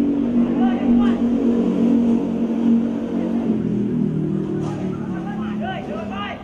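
A motor vehicle's engine running steadily, its pitch falling about halfway through.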